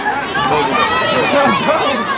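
Several people's voices talking and calling out at once, overlapping chatter with no clear words.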